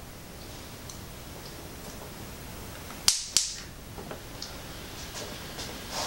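Battery connector being plugged into the RC truck's power lead: two sharp snaps about a third of a second apart, about three seconds in, followed by a few light clicks.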